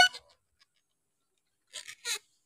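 The tail of a spoken word, then near silence. A short faint rustle comes near the end.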